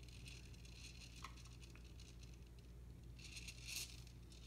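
Faint patting and scraping of a baby's hand on the plastic toys of an activity seat, with a short, slightly louder scrape near the end.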